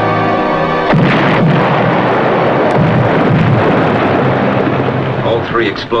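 Dramatic music, broken about a second in by a sudden loud explosion that rumbles on for several seconds: a torpedo detonating prematurely, short of its target.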